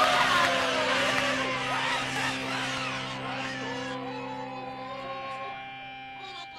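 A rock band's closing chord held and slowly dying away, with a lead line sliding up and down in pitch over it.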